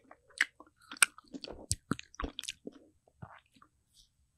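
Close-miked biting and chewing of an Okdongja ice cream bar: sharp cracks as teeth break the hard chocolate layer under the white milk coating, with wet chewing and mouth sounds between. The loudest crack comes about a second in.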